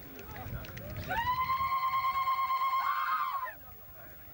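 A single long, high-pitched cry, held steady for about two and a half seconds before breaking off, over the noise of a large crowd.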